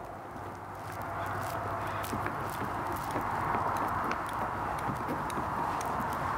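Faint, irregular clicks and light scraping as a small Phillips screwdriver turns a plastic screw into a scooter's turn-signal lens housing, over a steady hiss that grows a little louder about a second in.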